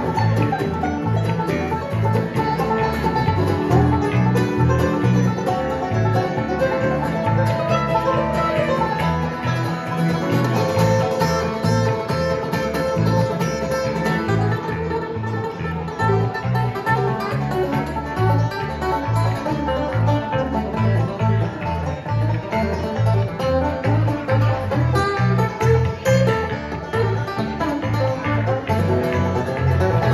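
Live bluegrass instrumental passage: a five-string banjo picking fast over strummed acoustic guitar and an electric bass laying down a steady, even bass line.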